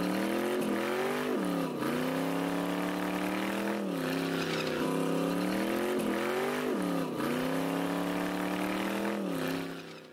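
High-performance car engine revving hard under wheelspin, its pitch climbing and then dropping sharply several times, with tyre hiss under it. It fades out at the end.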